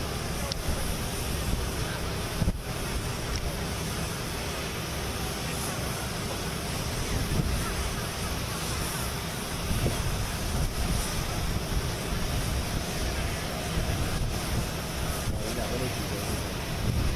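Steady airport apron noise beside a parked airliner: a continuous low rumble and hiss, with wind buffeting the microphone.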